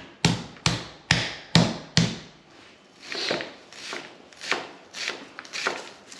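Heavy, regular thuds about twice a second of steak under plastic wrap being pounded flat with a mallet, stopping about two seconds in. Lighter, scattered knocks of a chef's knife cutting through onion onto a plastic cutting board follow.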